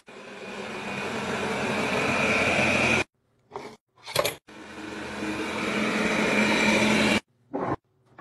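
Roborock S7+ auto-empty dock running its suction fan to empty the robot vacuum's dustbin: a loud rushing noise with a faint whine that builds up and cuts off abruptly after about three seconds. After two short knocks, a similar building noise runs for nearly three seconds and stops suddenly.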